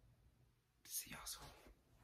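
Near silence, broken about a second in by a faint, breathy whisper from a man's voice lasting under a second.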